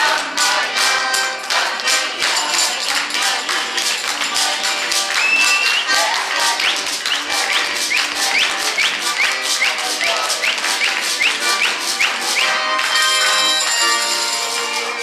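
Lively folk dance tune on accordion with people clapping along in steady rhythm. In the middle comes a run of short rising high-pitched calls, about two a second.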